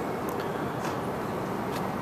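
Steady outdoor city background noise, an even hum with no distinct events.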